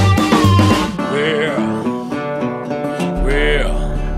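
Blues music: a drum beat for about the first second, then an amplified blues harmonica (blues harp) lick with bent notes sliding up and down, over a bass line that comes in near the end.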